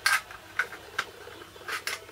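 Sharp plastic clicks and light clatter from handling the case of a plastic PID temperature controller as its clip-on bezel is unclipped and slid off: a loud click at the start, then several lighter ones, two close together near the end.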